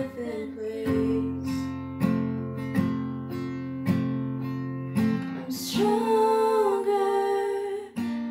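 Acoustic guitar playing slow chords, each struck about once a second. About two-thirds of the way through, a woman's voice comes in singing a long held note over the guitar.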